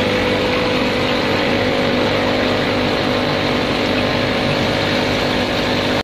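Steady electric hum of aquarium pumps: an even drone of several fixed low tones over a constant hiss, which cuts off suddenly at the end.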